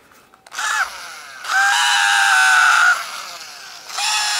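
Small battery-powered Techvac keyboard vacuum motor whining in bursts as its button is pressed: a short start about half a second in, a loud steady whine for about a second and a half, then it stops and starts again near the end. The sound is not healthy: the motor runs far too slowly to give any real suction.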